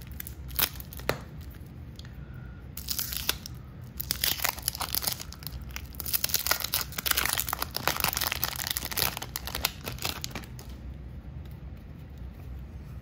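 Wax-paper wrapper of a 1993 Topps baseball card pack being torn and peeled open: a crackling, crinkling tearing that runs for several seconds, loudest in the middle and dying away near the end. A couple of light ticks come just before it, in the first second.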